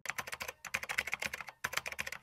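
Computer-keyboard typing sound effect: rapid key clicks in three quick runs, broken by short pauses about half a second and a second and a half in, as if the text were being typed out.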